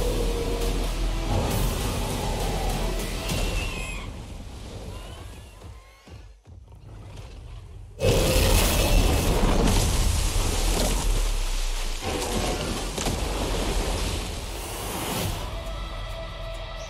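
Film trailer soundtrack: dramatic music over a deep rumble. It fades down to a low level in the middle, then comes back loud all at once about eight seconds in.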